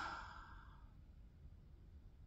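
A woman's sigh: a single breath out that fades away within about the first second.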